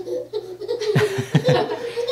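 A man laughing in a few short breathy bursts about halfway through.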